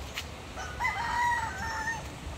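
A rooster crowing once: one drawn-out call that starts about half a second in and holds for well over a second, dropping a step in pitch near its end.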